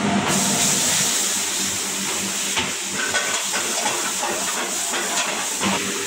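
Onion masala sizzling hard in hot oil and fried garlic in a pan over a gas flame. The hiss jumps up suddenly just after the start, as the masala hits the oil, and then keeps up a steady loud sizzle.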